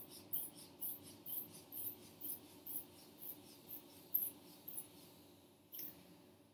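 Rubber hand bulb of a manual blood pressure cuff being squeezed to pump up the cuff, each squeeze a short hiss of air, about twice a second for the first four seconds or so, with one more near the end.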